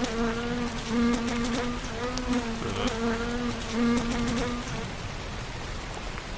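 Housefly buzzing close by, a steady droning hum that wavers a little in pitch and stops about five seconds in.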